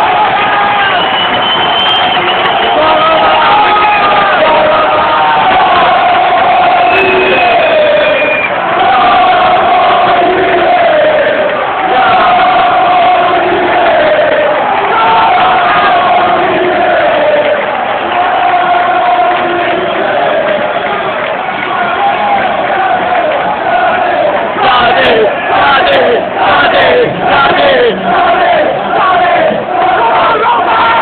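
Large football crowd in a stadium stand singing together, many voices holding long, wavering notes. Near the end the singing turns into a rhythmic chant of about two beats a second.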